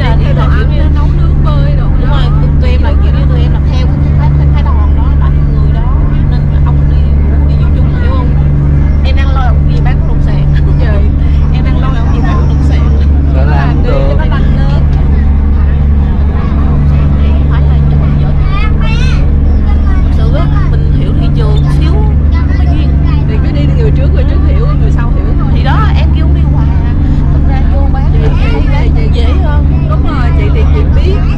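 Loud, steady low drone of a water bus's engine heard inside the passenger cabin, with people talking over it.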